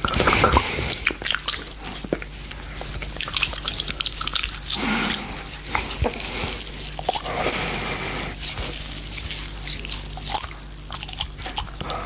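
Close-up wet mouth sounds of licking and biting a giant gummy candy: a dense run of wet smacks and sticky clicks.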